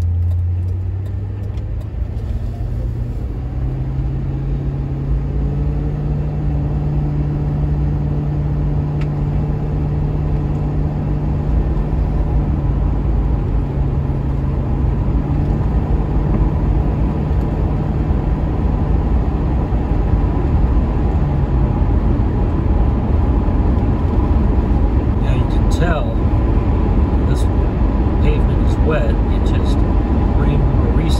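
A Ford Crown Victoria's 4.6-litre V8, heard from inside the cabin, pulls away from a stop. Its note rises over the first few seconds and then holds steady at cruise, under a rising hum of tyres on a wet road.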